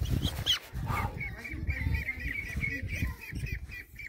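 Young mulard duck giving a rapid run of short, high calls, several a second, starting about a second in.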